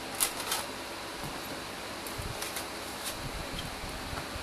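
Steady whoosh of a gaming PC's many case and radiator fans running. About a quarter and a half second in, two sharp clicks of plastic as a hand handles the Blu-ray cases stacked on the case and the optical drive front beneath them, with a few fainter ticks later on.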